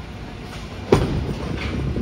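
Bowling ball landing on the lane with a sharp thud about a second in, then a steady low rumble as it rolls toward the pins.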